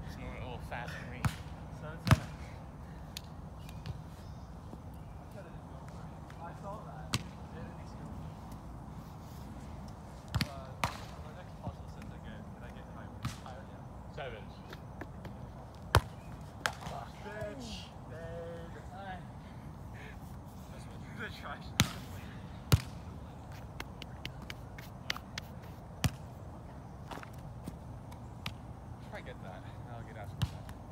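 A volleyball being struck by players' hands and forearms during rallies: about eight sharp smacks, spaced irregularly, over a steady low background hum. Faint distant voices come in briefly past the middle.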